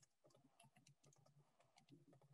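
Near silence, with faint, irregular clicks of typing on a computer keyboard.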